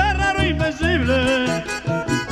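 Live vallenato music: a male singer's voice sliding up and down in pitch over a diatonic button accordion, with bass and percussion keeping a steady beat.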